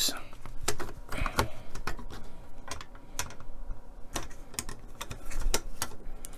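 Plastic model-kit parts clicking and tapping as a thin plastic strip is pressed into place along a model ship's hull section: a string of irregular sharp clicks, a few louder ones near the end.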